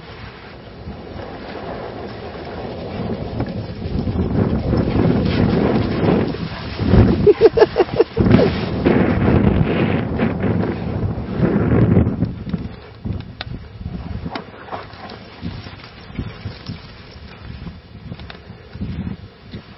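Wind buffeting the microphone in uneven gusts, swelling to its loudest in the middle, with a quick run of short pulses about seven to eight seconds in, then easing off.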